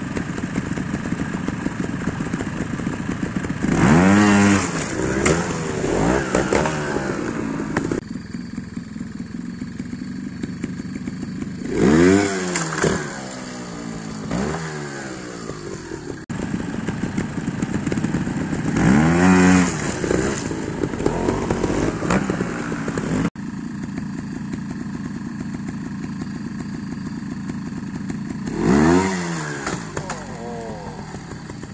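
Trial motorcycle engine running at a fast idle, opened up in four sharp throttle bursts, each rising and then falling in pitch, as the bike is driven up a stepped rock obstacle.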